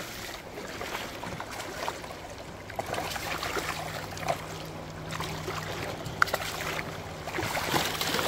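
Shallow river riffle running over cobbles: a steady rush of moving water, with a few faint splashes about halfway through and again near the end.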